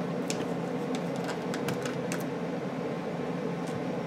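Faint, scattered light clicks of a small precision screwdriver working a screw in a laptop's motherboard, over a steady low hum.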